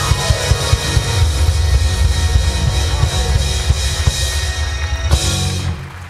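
Live rock band playing the closing bars of a song, with the drum kit to the fore. It ends on one final hit about five seconds in, and the cymbals ring out briefly after it.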